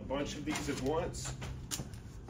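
A man's voice speaking in short phrases over a low steady hum.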